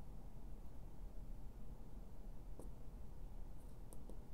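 Quiet room tone with a few faint short clicks in the second half, from the small tactile push buttons of an XY-LJ02 relay timer module being pressed.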